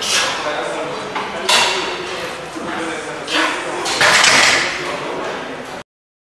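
A heavy barbell bench press set in a gym: several sudden loud bursts of effort and equipment noise over a steady room hiss and voices, the loudest a little after the middle. The sound cuts off abruptly near the end.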